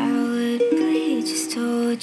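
Ukulele playing in a recorded song, several plucked notes ringing on together.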